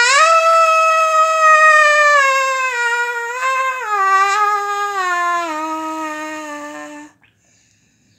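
A man's voice holding one long, high, wordless note that steps down in pitch about four seconds in and again about five and a half seconds in, then stops about seven seconds in.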